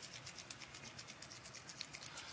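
Faint, rapid swishing and ticking from a capped sample tube shaken hard by hand, about ten strokes a second. This is the 30-second extraction shake in QuEChERS sample prep after the internal standard goes in.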